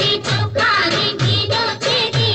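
A Gujarati garba film song: a woman singing over the backing music, with a low drum beat about twice a second.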